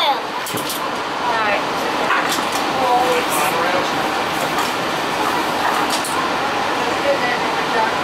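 Steady rushing of a parked monorail car's cabin air conditioning, with faint passenger voices and a few light clicks.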